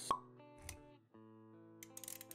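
A short, sharp pop just after the start, then a softer low thump, over background music with held notes. The music drops out briefly about halfway through, then resumes.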